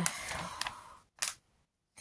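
Paper pages of a thick instruction booklet rustling as they are leafed through, with a short sharp flick about a second in.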